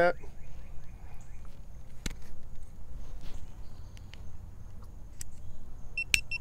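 Quiet outdoor background: a low rumble with a faint steady high whine, and a single sharp click about two seconds in.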